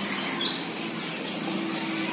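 Steady outdoor background noise with a low hum and a few short, faint high-pitched chirps.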